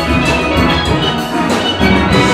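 Steel band playing: many steelpans struck together in a busy rhythm, with drums underneath.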